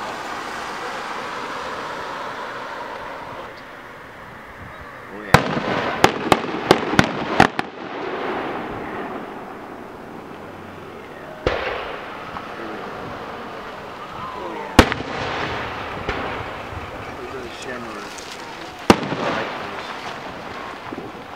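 Aerial fireworks shells bursting: one sharp report about five seconds in, quickly followed by a string of five more within two seconds, then single bangs a few seconds apart, the loudest about fifteen seconds in, each followed by a short echo. Crowd voices carry on between the bursts.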